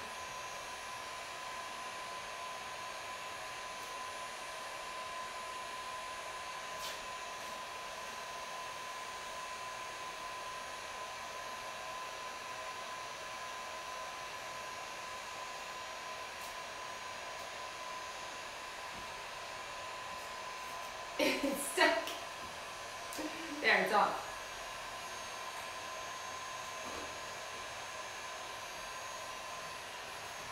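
Handheld electric heat gun blowing steadily with a constant whine, used to dry wet acrylic paint on a canvas. A person's voice sounds briefly twice, about two-thirds of the way through, above the blower.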